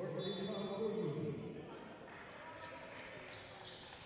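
Off-microphone voices in a basketball gym during a stoppage in play: one voice calls out for about the first second and a half, then fainter gym noise with a few small knocks.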